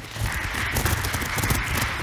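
Applause: many people clapping, a dense, steady patter of claps.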